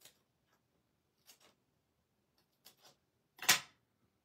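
Scissors snipping paper, a few short crisp cuts spaced about a second or more apart, then one much louder clack near the end as the scissors are set down on the craft mat.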